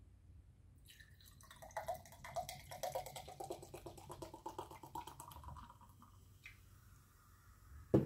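An energy drink poured from a can into a glass mug, gurgling for about five seconds, the pitch rising as the glass fills. A single sharp knock comes near the end.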